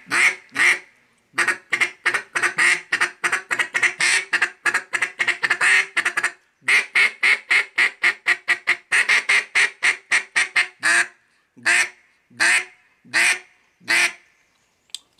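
Molded plastic duck call blown in mallard-hen quacks: a few quacks, then two long fast runs of quacks, then four single quacks spaced out near the end. Its plastic body gives it a slightly higher pitch than a wood call.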